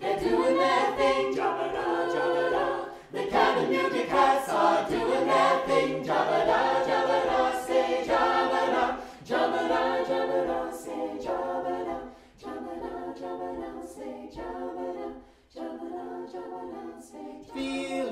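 A cappella vocal group of mixed men's and women's voices singing together in harmony, in phrases with a few brief breaks between them.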